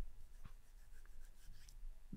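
Quiet room tone in a small room, with faint handling or rustling noises and a soft click about half a second in.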